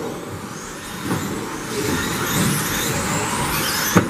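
1/10-scale electric RC buggies with 17.5-turn brushless motors racing on carpet: the motors' high whines rise and fall as cars pass, over steady tyre and running noise. There is one sharp knock near the end.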